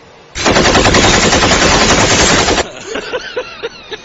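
A loud, rapid string of bangs, like automatic gunfire, lasting a little over two seconds and stopping suddenly. It is followed by a run of short vocal sounds.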